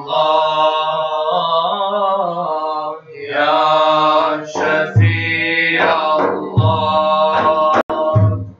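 A men's vocal group chanting an ilahija together in long, drawn-out melodic lines. About five seconds in, deep frame drum beats join the singing, a few strikes over the last three seconds.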